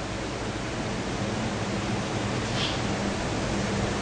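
A steady, even hiss of background noise with a faint low hum beneath it.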